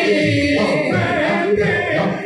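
A group of men singing Sufi devotional music, long held sung notes over a low beat.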